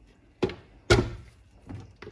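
Kitchenware being handled and set down on a hard counter: two sharp knocks about half a second apart, the second the louder, with a fainter knock near the end.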